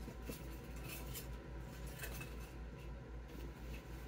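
Faint rustling and light clicks of a sign being handled and pressed into deco mesh on a wreath, over a steady low hum.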